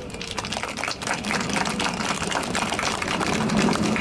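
Audience applause: many hands clapping, swelling over the first second or so and then holding steady.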